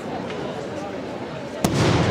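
A single sharp firework bang about one and a half seconds in, echoing afterwards, with people talking in the background.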